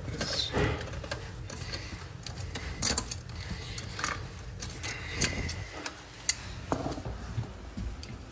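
Channel-lock pliers working a toilet's closet bolt at the base of the bowl: irregular metal clicks and scrapes, some sharp knocks among them.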